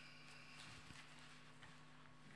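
Near silence: a faint steady electrical hum, with soft paper rustles and small taps as the pages of a Bible are turned.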